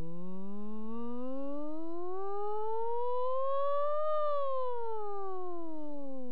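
A human voice doing a vocal siren on a sustained "o" vowel for a voice-range (phonetogram) test. It glides smoothly from a low pitch up to its highest note about four seconds in, then slides back down.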